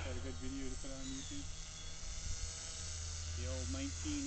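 Faint electric whine of the paraplane's brushless outrunner motor, coming in short spells that jump between a few steady pitches, with a pause of about two seconds in the middle. A low steady hum runs underneath.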